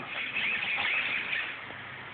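Small RC servos whirring as they drive a helicopter's swashplate, a high wavering whine for about a second and a half before it falls away.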